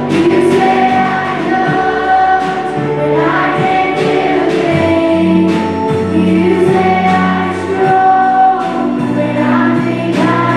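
Live worship band playing a slow song: female voices singing together over keyboard, acoustic guitar and drums.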